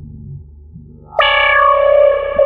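Prophanity software synthesizer, an emulation of a Sequential Circuits Prophet-5, playing: a low held note dies away, then about a second in a loud, bright note with a sharp attack comes in and sustains.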